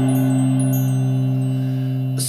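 Music: a keyboard chord held steadily, with a bell-like ring, fading slightly.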